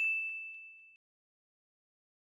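A single bright ding sound effect, a bell-like chime that rings and fades out within about a second. It is the editor's cue marking a pause in the reaction, as the on-screen pause counter ticks up.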